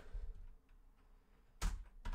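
Computer keyboard being typed on quietly, with one louder short knock about a second and a half in.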